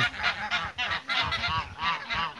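Domestic geese, brown Chinese geese among them, honking in a rapid run of short, high, nasal calls, several a second.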